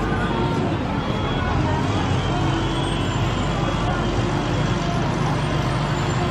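A large vehicle's engine running steadily close by, a low even drone, with people's voices behind it.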